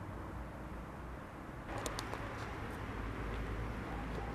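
Outdoor street ambience: a steady low rumble that turns louder and hissier, with a few sharp clicks, just under two seconds in.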